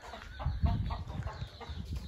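Chickens clucking in short, scattered calls.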